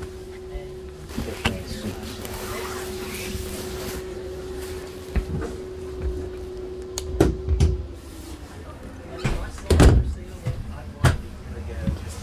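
Cabinet or interior doors of a camper being opened and shut, with a few knocks and thumps in the second half, the loudest about ten seconds in. Under them a steady hum runs and stops about eight seconds in.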